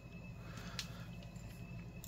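A few faint, light clicks of a small screwdriver and tiny screws as screws are removed from a compact camera's lens assembly, over a low steady hum and a faint high whine.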